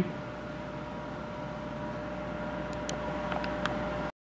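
Steady background hum of a small room with a faint held tone. A few faint light clicks come in the second half.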